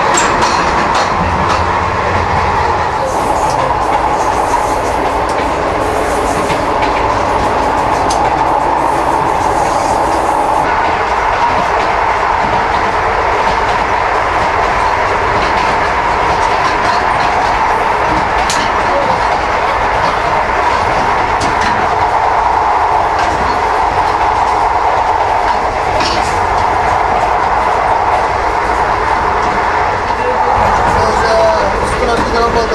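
Passenger train running steadily along the rails: a continuous rumble with a few scattered sharp clicks from the wheels over rail joints.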